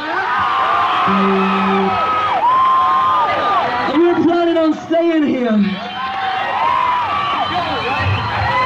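Live rock concert audio: a man's voice with long held notes, over crowd noise and whoops from the audience.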